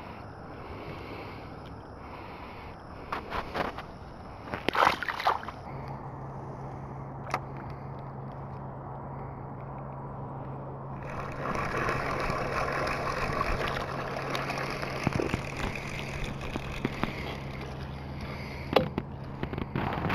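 Water sloshing and gurgling around a small aluminium fishing boat, with a few sharp knocks in the first five seconds. From about six seconds a steady low hum joins, typical of a bow-mounted electric trolling motor running, and the water hiss grows louder from about eleven seconds.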